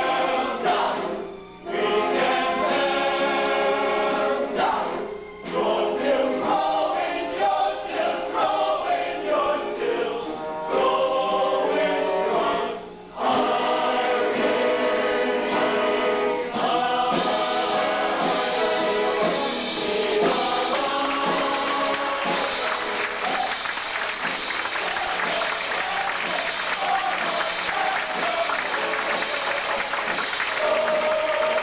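High school choir singing a staged show number, its voices breaking off briefly three times in the first half before running on in a fuller, busier stretch.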